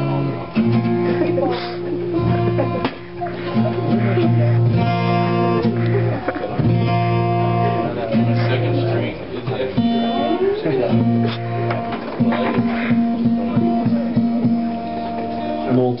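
Acoustic guitars strummed in held chords while being tuned up, with some notes sliding in pitch along the way.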